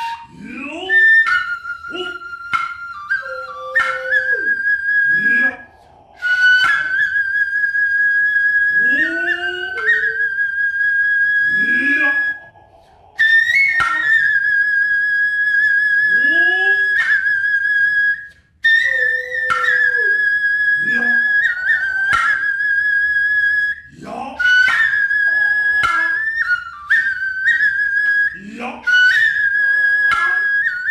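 Noh music: a nohkan bamboo flute plays long, high, slightly wavering notes, broken by a few short pauses. Sharp strokes on an ōtsuzumi hip drum and the drummer's drawn-out kakegoe calls, each rising in pitch, come in between.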